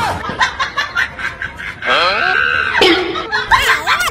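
Laughter and snickering, with voices crying out in short bouts.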